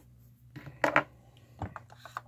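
A few short clicks and scrapes of a precision screwdriver's tip against the underside of a diecast model car, the loudest about a second in, as it is pushed in to release the hood.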